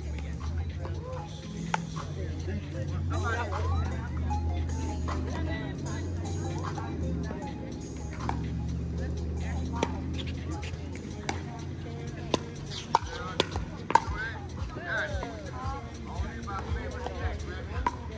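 Pickleball paddles striking a hard plastic ball: sharp pops spread through the rally, with three loud hits in quick succession about two-thirds of the way in, over distant chatter and music.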